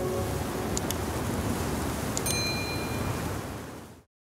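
Steady rushing wind noise with a couple of faint high chime tones, about a second in and just after two seconds, fading out near the end.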